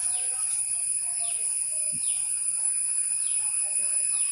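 Outdoor nature ambience: a steady high-pitched buzz, with a short falling chirp repeating about once a second and fainter scattered chirps beneath.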